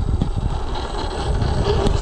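Wind buffeting the microphone: a low, irregular rumble with no clear motor whine.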